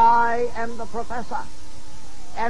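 A man's voice: one long drawn-out syllable, then a quick run of short syllables with strongly rising and falling pitch.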